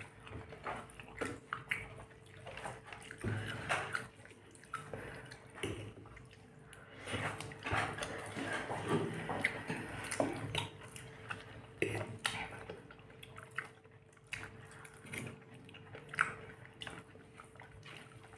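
Two people eating saucy Manchurian balls with forks: irregular light clicks of forks against plates, with soft chewing and wet mouth sounds. A faint steady hum runs underneath.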